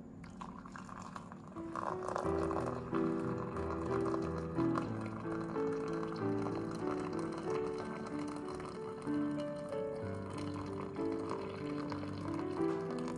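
Water poured in a steady stream into a glass mug over a tea bag, splashing as the mug fills, under background music: a melody of short stepping notes that comes in about two seconds in.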